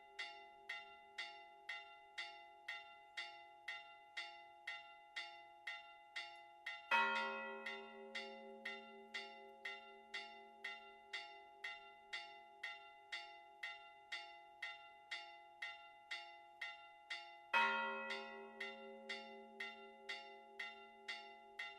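Four church bells rung together in a Maltese simulated solemn peal (mota). A bell is struck rapidly and evenly, about two and a half strikes a second. Twice, about ten seconds apart, a deeper bell is struck harder, and its low hum rings on under the quick strikes.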